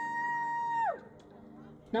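An announcer's voice holding one long, drawn-out syllable at a steady pitch, the end of a player introduction, which glides down and stops about a second in; a short lull follows before the next name is called.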